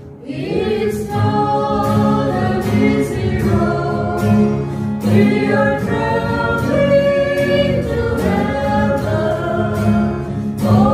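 Small mixed group of men and women singing a Christian worship song together, accompanied by strummed acoustic guitar. The voices come in about half a second in, after a guitar-only passage.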